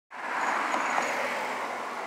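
Steady hum of road traffic, fading in over the first half-second and then holding level.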